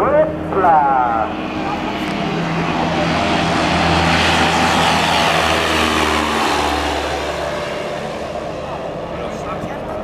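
Single-engine high-wing light aircraft taking off at full power: the propeller engine grows louder as the plane lifts off close by, drops in pitch as it passes, then fades as it climbs away. A man's voice is heard briefly at the start.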